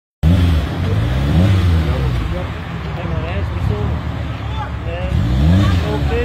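Car engine revved in repeated blips, its pitch rising and falling several times, cutting in suddenly just after the start, with people talking over it.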